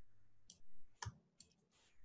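A few faint, short clicks, spaced roughly half a second apart, over quiet room tone.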